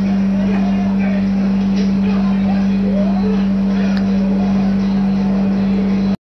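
A steady low-pitched hum that never changes, with faint voices underneath it.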